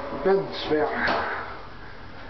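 A person's voice saying a few short words inside a small lift car. The voice stops after about a second, leaving a steady low background hum.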